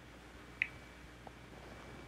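Quiet room tone with a faint steady hum, broken by one brief high chirp about half a second in and a faint tick a little later.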